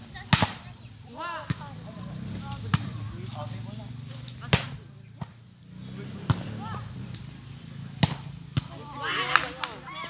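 A volleyball being struck by players' hands and forearms in a rally: sharp slaps, about eight of them at uneven intervals, the loudest right at the start. Players' shouts and chatter come in between.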